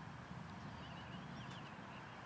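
Quiet outdoor ambience: a faint low rumble with a few soft, high bird chirps about a second in.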